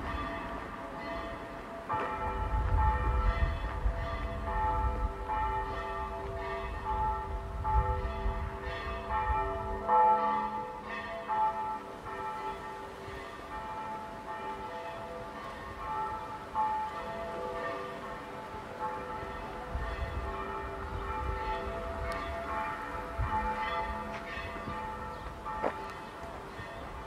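Church bells ringing, several bells struck over and over in a quick, uneven pattern, each strike ringing on under the next.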